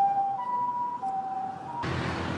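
Two-tone hi-lo siren of an emergency vehicle, switching between a higher and a lower note about every half second. Near the end it cuts to a rushing hiss.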